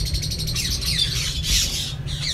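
A flock of cockatiels calling in their aviary: many quick, overlapping chirps and squawks that sweep downward in pitch, with a steady low hum underneath.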